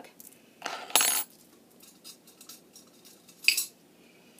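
Metal crochet hooks clinking and rattling against one another in a jar as one is put back and another picked out. There is a short rustle, then a sharp clink about a second in and another clink near the end.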